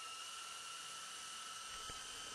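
Small electric motor and rotor of an RC model helicopter running at a steady speed, a faint high whine with a light hiss, throttled up until the model is light on its wheels.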